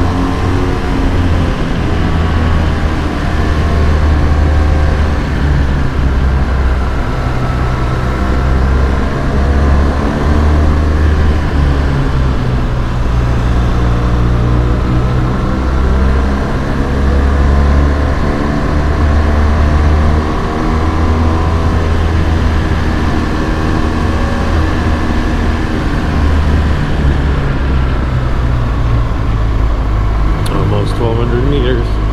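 Motorcycle engine running on the move, its note rising and falling gently as the bike speeds up and eases off through the bends.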